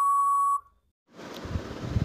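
Quiz countdown timer's time-out signal: one long, steady electronic beep that cuts off about half a second in, marking that the time to answer has run out. A steady background hiss comes up about a second later.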